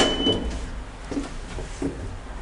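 A sharp metallic click with a brief high ring right at the start, then a few soft knocks: the hardware of a hydraulic elevator's doors being worked.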